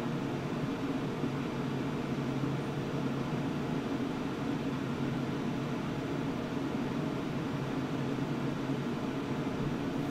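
Steady whirring hum and hiss of a computer's cooling fans running hard under the load of a CPU render, unchanging throughout.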